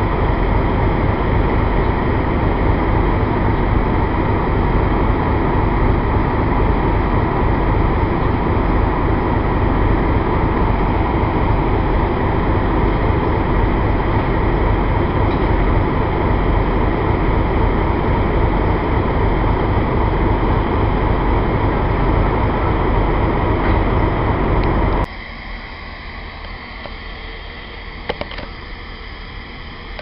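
Diesel locomotive engine idling steadily at close range, loud, with a low steady running note. About 25 seconds in it gives way suddenly to a much quieter, steady background.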